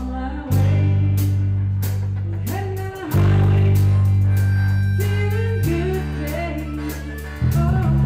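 Live blues band playing: electric bass holds long notes that change every two to three seconds under a drum kit keeping time on the cymbals, with electric guitar and sliding, bending melody notes over the top.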